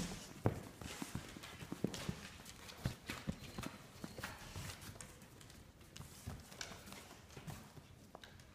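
A puppy scrambling and playing on a blanket-covered lap: irregular light taps and knocks with fabric rustling, a few sharper knocks in the first three seconds.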